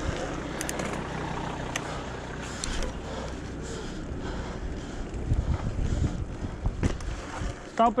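Mountain bike rolling along an asphalt street: steady tyre and road noise with wind on the microphone, and a few short clicks and rattles from the bike.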